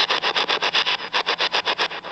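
Spirit box scanning through radio stations: rapid, evenly spaced bursts of static, about nine a second, with no voice coming through.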